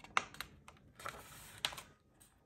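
A paper page of a softcover picture book being turned and pressed flat: a soft papery rustle with a few sharp clicks, one just after the start and one near the end.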